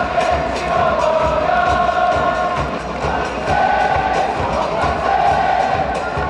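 A football supporters' end singing a chant together in long held notes, over a steady drumbeat.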